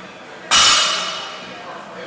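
A single sharp metallic clang of gym weights or steel equipment being struck, ringing out for about a second before fading.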